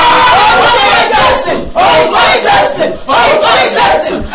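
A man and a woman shouting together in loud, fervent prayer, in phrases broken by two short pauses.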